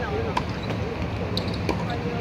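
Tennis ball struck by a racket on a serve, giving a sharp pop about half a second in, followed by a couple more ball hits or bounces later on. Voices talk over a steady low city hum.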